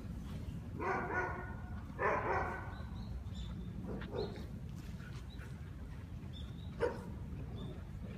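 A dog barking twice, about a second and two seconds in, each bark drawn out for about half a second, over a steady low rumble.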